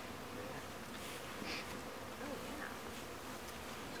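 Honeybees from a freshly installed package buzzing around the hive in a steady drone.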